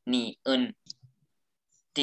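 A couple of spoken syllables, then a faint single click just under a second in, from a computer mouse while drawing an annotation on screen.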